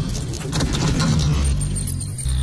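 Intro sound effects: a rapid run of metallic clinks and clatter, like metal plates knocking together, over a deep low rumble; the clatter thins out after about a second while the rumble carries on.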